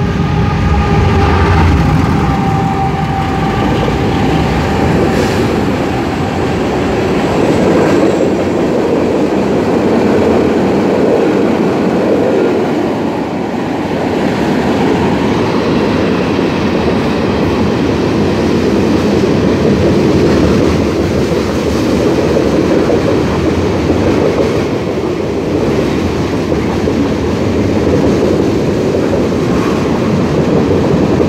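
Mixed freight train's cars rolling past close below: a loud, steady rumble and clatter of steel wheels on rail. A humming tone at the start fades within the first few seconds.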